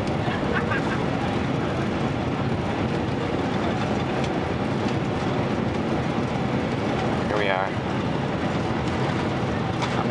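Steady cabin noise of a jet airliner landing, with its engines and rushing air heard from a window seat as it rolls down the runway. A short voice-like call breaks in briefly about two-thirds of the way through.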